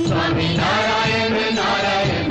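A devotional Hindu chant to Narayan (Vishnu), sung by a voice over music.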